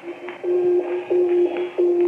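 Radio-drama sound effect of a radio signal beamed at the moon: a low electronic tone that starts about half a second in and beeps on and off in even pulses, about three every two seconds.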